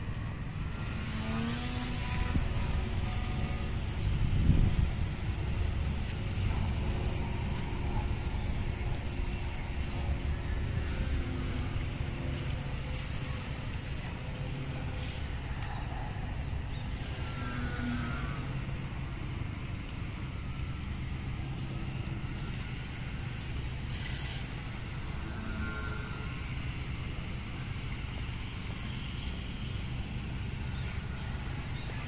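Radio-controlled model airplane's motor and propeller whining in flight, the pitch rising and falling several times as it passes back and forth. Underneath is wind rumble on the microphone, with a gust about four seconds in.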